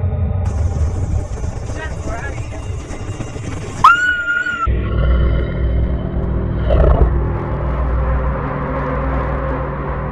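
Horror soundtrack: a low rumbling drone, a short high screech about four seconds in, then a steadier droning score of held tones.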